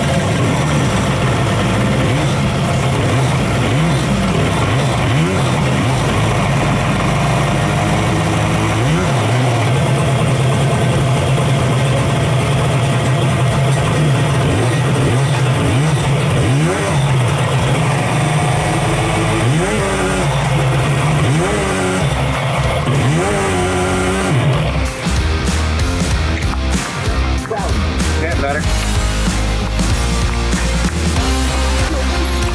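Two-stroke stroker engine of a 1994 Yamaha Superjet stand-up jet ski running and revving, its pitch rising and falling again and again, with several quick rev sweeps a little past the middle, on a test run between carburetor adjustments.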